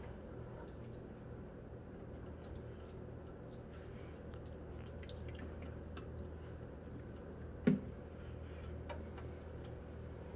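Quiet handling sounds of honey being poured from a plastic jug into a pot of warm water and stirred: faint scattered ticks and clicks over a steady low hum, with one sharper knock about three-quarters of the way through.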